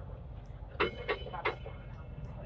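Hong Kong Light Rail car rumbling as it pulls away from a stop, with three quick ringing dings about a second in.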